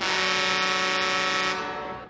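A boat's horn: one steady blast that holds for about a second and a half, then fades out.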